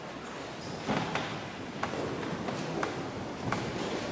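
A church congregation settling into wooden pews, with shuffling and rustling broken by several sharp wooden knocks from the pews and kneelers, ringing in a large reverberant church.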